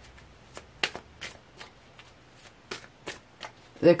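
A deck of tarot cards being handled and shuffled: a string of sharp, irregular card clicks and snaps, a few a second.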